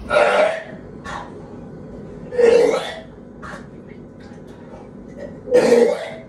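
A person coughing and clearing their throat: three loud bursts, each about half a second, at the start, about halfway through and near the end, with a few fainter ones between.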